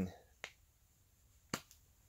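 Two small, sharp clicks about a second apart as a brass pressure washer unloader and its fittings are handled.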